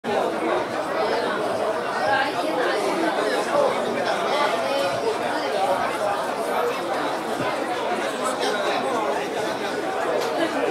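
Indistinct chatter of many passengers talking at once in a ferry's passenger cabin, a steady wash of overlapping voices with no single voice standing out.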